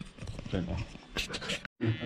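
Soft voices and breathy sounds at close range. The sound drops out completely for a moment near the end, and then a voice starts.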